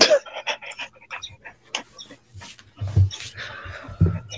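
A dog panting close to the microphone, a fast run of short breaths.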